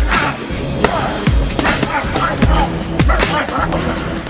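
Music with a heavy, repeating bass beat and a vocal line over it.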